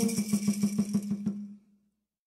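The fast, even beat of a drum and rattle closing a peyote song, about eight strokes a second. The last of a held sung note ends just after the start, and the beat fades out about a second and a half in.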